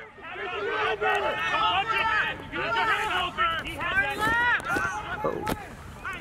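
Several voices shouting and calling at once across a rugby field, overlapping one another, with one sharp click near the end.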